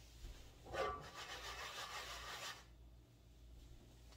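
A rasping scrape lasting about two seconds: a nonstick frying pan dragged across the gas stove's grate as it is taken off the burner.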